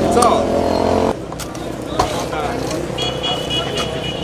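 A motor vehicle's engine running with a steady hum under crowd voices, cutting off abruptly about a second in; after that, voices and crowd chatter, with a single sharp click near the middle and a brief high steady tone near the end.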